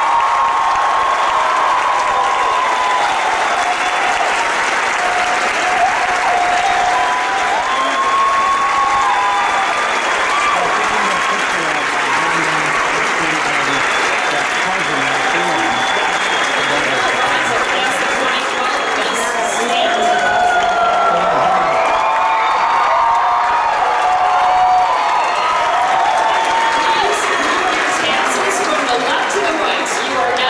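Large audience applauding steadily throughout, with voices calling out and cheering over the clapping.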